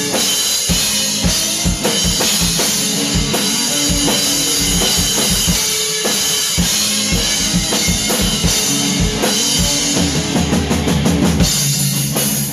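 Live drum kit played hard, with regular kick-drum beats, snare hits and a constant cymbal wash, over electric guitar chords; lower held notes join about ten seconds in.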